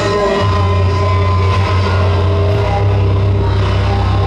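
Heavy rock band playing live and loud: electric guitars, bass and drums, with a sustained low bass note under the mix.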